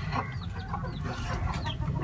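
Chicks peeping: a series of short, high calls, each sliding downward in pitch, repeating every half second or so.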